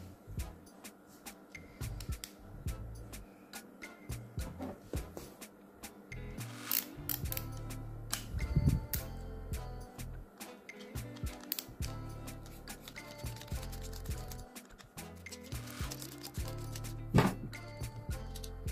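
Many small clicks and scrapes of a VGR V961 hair trimmer's T-blade being unscrewed with a small screwdriver and lifted off, over soft background music.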